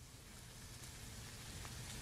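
Heavy cream poured in a thin stream from a glass measuring cup into a glass bowl of beaten eggs: a faint, steady trickle that grows slightly louder.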